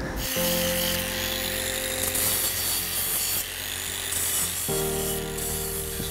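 Background music of held chords that change about two-thirds of the way through, over a steady rasping of hand tools, files or saws, working metal castings.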